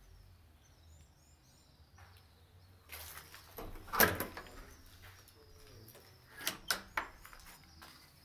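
Small birds chirping repeatedly, in short rising calls. A loud thump about four seconds in and a few sharp knocks near the end stand out over them.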